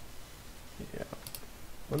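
Computer mouse button clicked twice in quick succession, a little past halfway.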